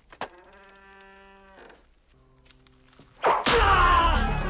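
A click, then two quiet, steady held tones from the film's score, one after the other. About three seconds in, a loud, sudden burst of action music and crashing noise breaks in.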